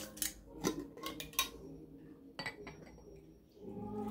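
Metal screw lid being twisted off a glass mason jar: a few light clicks and scrapes of the lid on the jar. Near the end, pear juice starts pouring from the jar into a glass.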